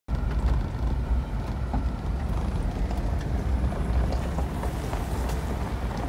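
A vehicle driving, heard from inside the cab: a steady low rumble of engine and road noise, with faint scattered clicks over it.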